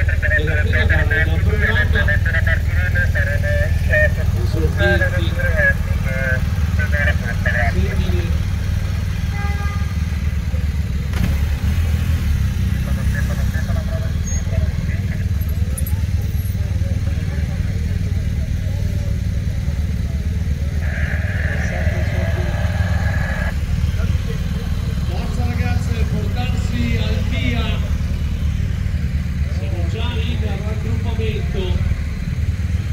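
A steady low engine rumble from vehicles on the road, with people talking. A short steady tone sounds about two-thirds of the way through.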